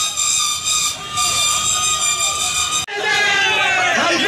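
A steady hiss with several held high tones plays over a video transition and stops abruptly about three seconds in. Voices talking over street noise follow.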